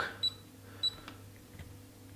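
Two short high-pitched key beeps from a Brymen BM877 insulation multimeter, about a quarter second and just under a second in, as its front-panel buttons are pressed, over a faint low hum.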